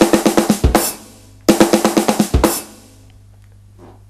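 Electronic drum kit playing a quick linear fill that trades single strokes between snare drum and bass drum. It is played twice, each a rapid run of about ten strokes ending in a heavier hit that rings on.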